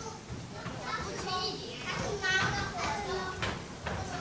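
Several children's voices talking and calling out at once, overlapping, in a large hall.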